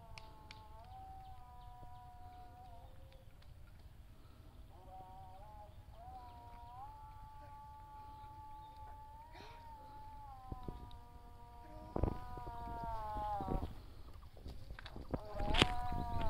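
A voice holding long, steady notes that step up and down in pitch, in three drawn-out stretches. A few sharp knocks come near the end.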